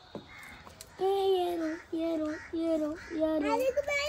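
A crow cawing: a run of short, harsh calls, about three a second, starting about a second in.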